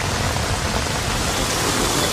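Heavy rain falling onto standing water, a steady dense patter of drops.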